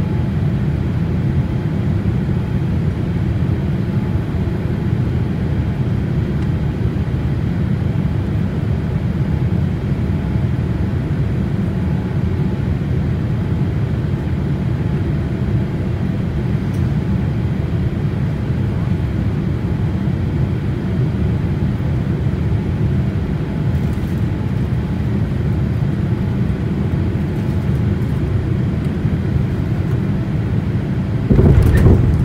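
Steady engine and airflow rumble inside the cabin of an Air Japan Boeing 787-8 on final approach, heard from a seat beside the wing-mounted engine.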